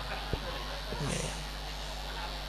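Audience laughing and chuckling faintly after a joke, over a steady low hum, with a single sharp click about a third of a second in.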